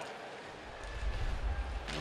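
Broadcast transition sound effect for a period-break graphic: a low rumbling whoosh that swells through the middle and ends in a short sharp hit near the end.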